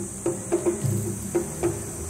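Festival drums playing an irregular beat of strikes, each with a ringing low tone, over a steady high chirring of insects.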